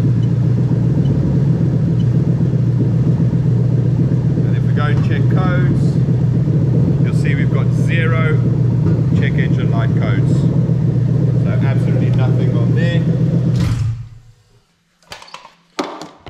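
Lexus 3UZ-FE V8 idling steadily at about 900 rpm, still warming up, then switched off near the end so that the engine note stops suddenly. A few clicks follow the shutdown.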